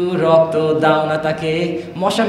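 A man chanting Bengali rap lyrics in a sing-song voice, holding long notes rather than speaking.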